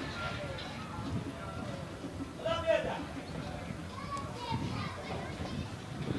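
Scattered distant shouts and calls from football players and onlookers at an outdoor match, with one louder shout about two and a half seconds in.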